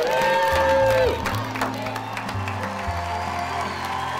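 Cheering with one long held shout in the first second, over background music with low sustained bass notes that carry on after the shout ends.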